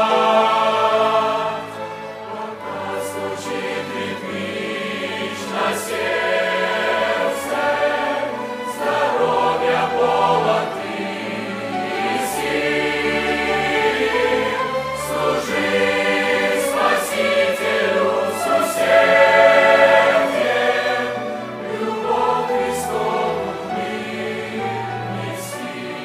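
Large mixed choir singing a hymn with a string orchestra of violins accompanying, the sound full and sustained, swelling loudest near the start and again about two-thirds of the way through.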